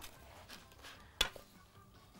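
Quiet handling of shredded kanafa dough as it is tipped from a bowl and spread onto a metal baking pan, with a single sharp click just past a second in.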